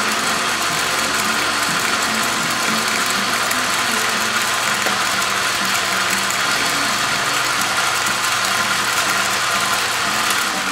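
South Bend 9-inch metal lathe running steadily on its 1/3 hp electric motor, with the whir and chatter of its belt and gear drive.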